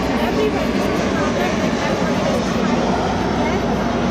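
A woman speaking, with the chatter of a crowd behind her.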